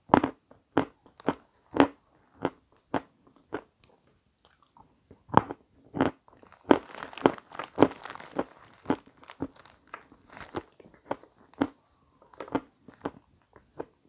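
A person chewing crunchy cake close to the microphone: a run of sharp crunches about every half second, thickest in the middle.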